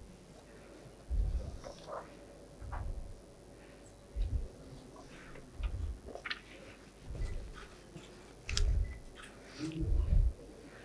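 Dull low thumps about once every second and a half, with faint clicks and rustling between them.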